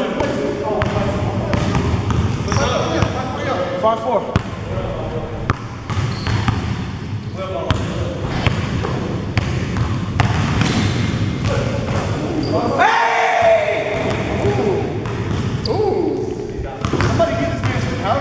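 A basketball bouncing repeatedly on an indoor gym's hard court floor during play, with players' voices calling out over it.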